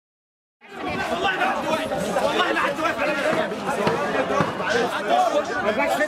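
A brief silence, then a crowd of men all talking at once, their voices overlapping in a steady babble.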